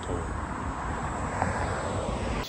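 Road traffic: a vehicle driving past on the street, a steady rushing noise with a low rumble that swells about a second in.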